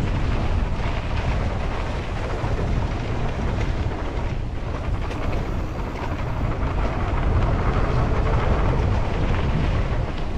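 Mountain bike ridden along a dirt trail, heard from a camera on the bike or rider: a steady loud rumble of wind buffeting the microphone and tyres running over dirt, heaviest in the low end.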